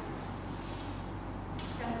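A pause in a woman's speech, filled by a steady low electrical hum and room noise with a short hiss, before her voice comes back near the end.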